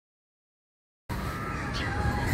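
Silence, then about halfway through, outdoor background sound cuts in suddenly: a low rumble with faint, thin high tones above it.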